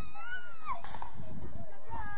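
A long, high-pitched shout, most likely a child's, wavering in pitch and breaking off just under a second in. Gusty low rumble of wind on the microphone runs underneath, with a brief sharp knock as the shout ends.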